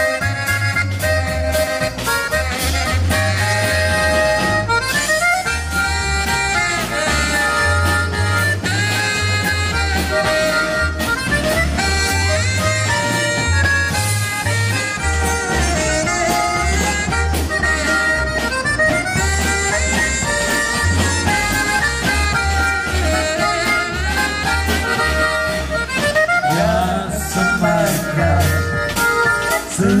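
Live polka band playing: snare drum, cymbals and drum kit keep a steady beat under a held melody line and a regular low bass pulse. A voice starts singing right at the end.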